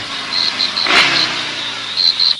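A car driving past: a steady rushing sound that swells to a peak about a second in and then eases off, with crickets chirping in a rapid, even rhythm.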